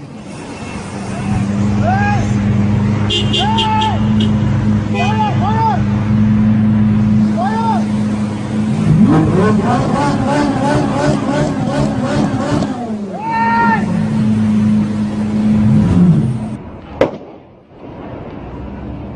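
A car engine running at a steady note, revved up about halfway through and then easing back down, with people calling out over it; it cuts off shortly before the end, followed by a single sharp click.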